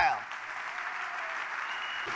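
A large audience applauding: an even wash of clapping that starts just as a spoken sentence ends and holds steady.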